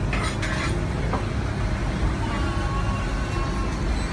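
A spoon and fork clinking and scraping against a plate a few times, mostly in the first second, over a steady low background rumble.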